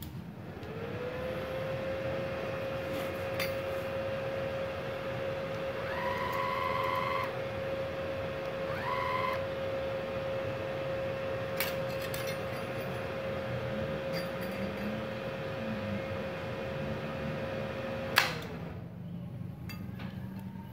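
Inverter MIG welder switched back on and running with a steady whine, with two short higher-pitched whines about six and nine seconds in. About 18 seconds in, a sharp snap comes as the welding wire touches the work: the 4-amp breaker trips at once on the 900-watt supply, and the whine winds down.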